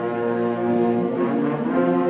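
High school concert band playing sustained chords with the brass to the fore, moving to a new chord near the end.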